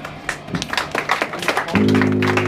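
Guitar played through the band's amplifier: a run of quick scratchy strums, then a chord held and ringing out from about three-quarters of the way in.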